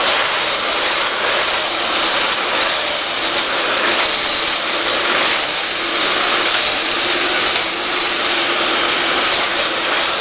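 Vintage corded electric Black & Decker Edge Hog lawn edger running steadily with a high whine, its spinning blade cutting the grass edge along a patio as it is worked back and forth.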